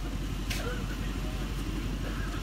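Mercedes-AMG C63 S Estate's twin-turbo V8 idling steadily with a low rumble, running through catless (decat) downpipes.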